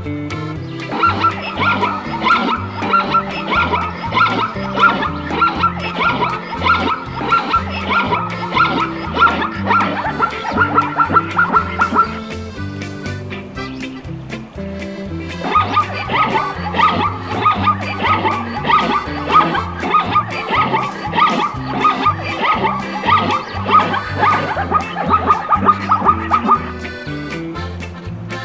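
Zebra calling, a rapid run of high, dog-like yelping barks in two long bouts with a pause of a few seconds between them, over background music with a steady beat.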